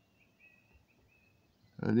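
Near silence with faint, short, high bird chirps; a man's voice starts near the end.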